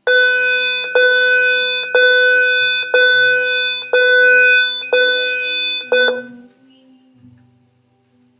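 A loud electronic tone: one unchanging note re-struck about once a second, seven times, that stops suddenly about six seconds in.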